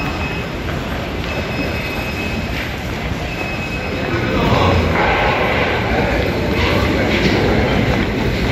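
Small wheeled roller bags rolling over a hard tiled floor: a continuous rumbling rattle that grows louder about halfway through as the bags come close.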